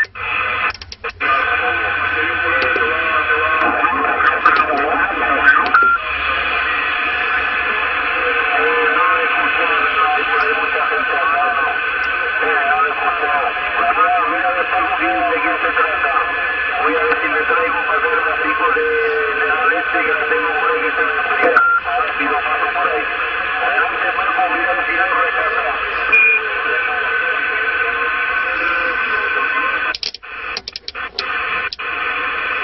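CB transceiver's speaker playing 27 MHz skip reception: several distant stations talking over one another, garbled and hard to make out, under static with steady heterodyne whistles. The signal drops out briefly just after the start, then holds.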